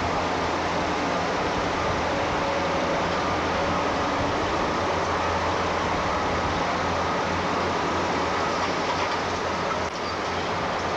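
Steady din of heavy machinery running, with a few faint steady tones in it.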